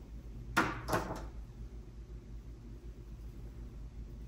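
Two light knocks of plastic and cardboard game pieces being handled on a tabletop, about half a second and a second in, then quiet room tone with a faint low hum.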